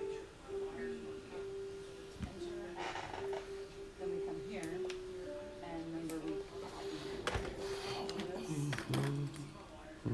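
Background music, a song with a singing voice, playing throughout, with a few sharp knocks from the drone being handled on the bench mat.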